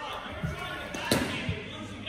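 A thud as the pitcher's stride foot lands on a portable pitching mound, then, just after a second in, a single sharp crack as the pitched baseball hits its target, followed by another thud.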